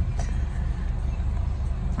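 Steady low rumble of a car heard from inside its cabin, with a faint click just after the start and another near the end.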